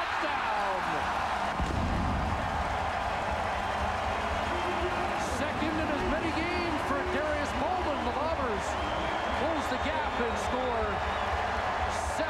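Football stadium crowd cheering and shouting after a home-team touchdown, many voices overlapping in a steady roar with scattered sharp claps.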